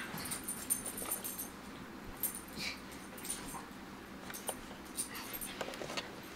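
Small dog making a few brief, soft sounds while it is played with and rubbed, with light rustling and scattered small clicks.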